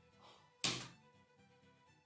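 A single sharp keystroke on a computer keyboard about two-thirds of a second in, over faint background music.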